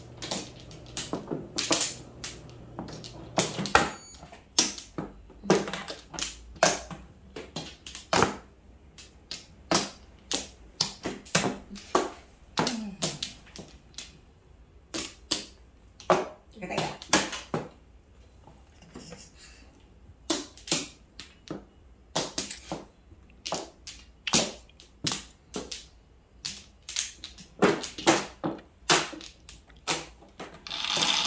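Mahjong tiles clacking as players draw, set down and discard them on a felt-covered table: irregular sharp clicks, sometimes several a second, with a short lull about two-thirds of the way through.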